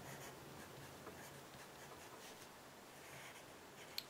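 Faint scratching of a dull pencil writing on paper, in short strokes.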